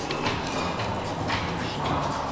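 Restaurant dining-room background: a steady murmur of the room with faint music under it, and a few light knocks.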